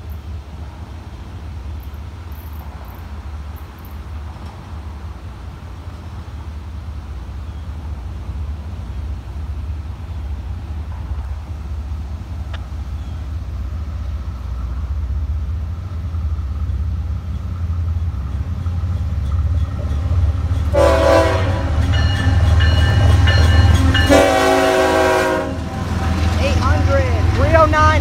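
Florida East Coast Railway freight train approaching, its low rumble growing steadily louder as it nears. About three-quarters of the way in, the locomotive horn sounds two long blasts as the train comes up close, and it sounds again near the end.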